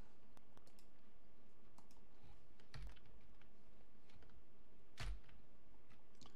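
Scattered faint clicks from a computer keyboard and mouse, with two sharper knocks about three and five seconds in.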